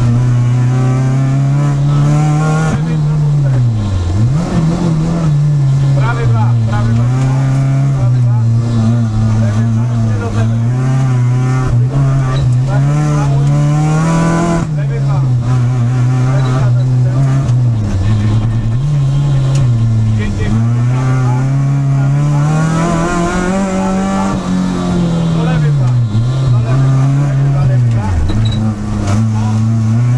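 Peugeot 306 Group A rally car's four-cylinder engine heard from inside the cabin, revving up and dropping away again and again as the car accelerates, changes gear and slows for corners on a rally stage.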